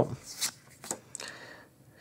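Pokémon trading cards sliding against each other as a pack is flipped through by hand, one card moved from the front of the stack to the back: a few short swishes.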